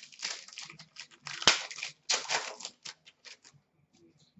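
A foil trading-card pack being torn open and its cards handled: a run of short crinkling, rustling strokes, with one sharp snap about a second and a half in.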